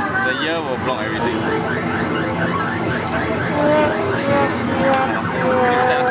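Electronic arcade machine music, a tune of quick repeating notes and held tones, with a person laughing about a second in.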